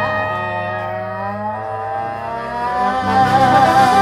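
Live traditional jazz band with female vocals, trumpet, trombone, clarinet, sousaphone, guitar and drums, playing long held notes. It swells louder about three seconds in, with one wavering held note standing out above the band.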